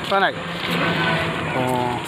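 A motor vehicle driving past close by on the road, its engine hum and road noise swelling within the first second and staying loud.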